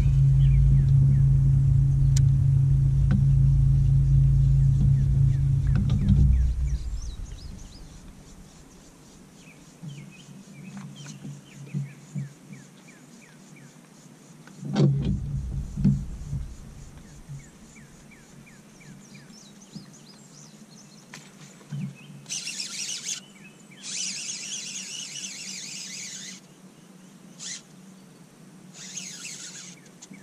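Bow-mounted electric trolling motor on a bass boat, humming steadily and loudly for about the first six seconds, then again briefly around the middle. In the quieter stretches birds chirp, and several short bursts of high hiss come near the end.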